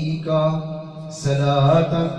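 A man's voice chanting an Arabic Darood (salawat, blessings on the Prophet) into a microphone in a sustained, melodic recitation style, with held notes and a brief hissed consonant about a second in.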